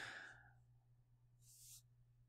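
Near silence in a pause in a man's speech: a faint breath trails off at the start, and a short, faint in-breath comes about a second and a half in.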